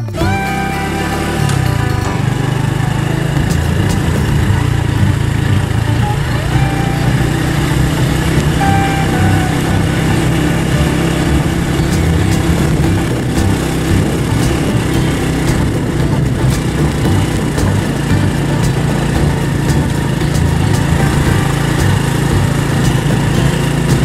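Small motorcycle engine running steadily while riding along a rocky gravel dirt road.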